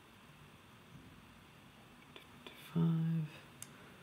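Quiet room tone with a few faint small clicks from an automatic wristwatch being handled while its hands are set by the crown. The sharpest click comes near the end.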